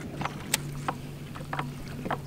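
A bass boat's bow-mounted electric trolling motor humming steadily, with a few light clicks and taps over it, the sharpest about half a second in.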